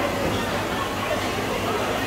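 Indistinct background chatter of a busy restaurant over steady room noise and a low hum.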